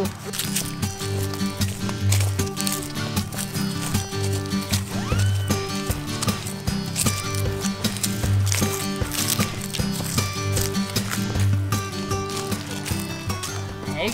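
Background music with sustained notes, a bass line and a steady beat.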